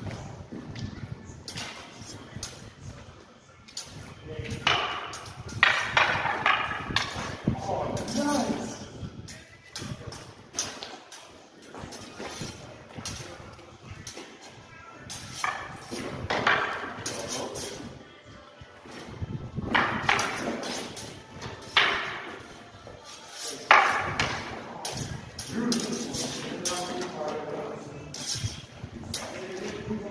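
Singlestick sparring: irregular sharp clacks of wooden sticks striking, with footsteps on paving and occasional voices, echoing under a concrete bridge.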